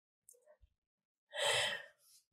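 A woman's short, audible breath through the microphone, about three-quarters of the way in, in an otherwise near-silent pause.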